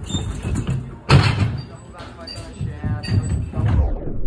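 Indistinct talking, with a sudden loud thump about a second in.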